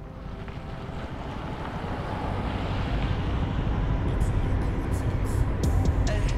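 Land Rover SUV driving, its road and engine noise in the cabin swelling steadily louder as it picks up speed. Music starts to come in near the end.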